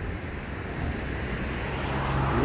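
Steady background noise of street traffic, growing slightly louder near the end.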